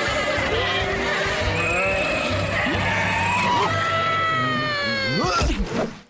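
Cartoon soundtrack: a flock of sheep bleating and cheering together over music. A quick swooping sound comes a little after five seconds in, then everything cuts off suddenly at the end.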